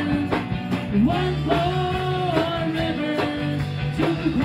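Live gospel song: women's voices singing long held notes through microphones, over electric keyboard and a regular beat.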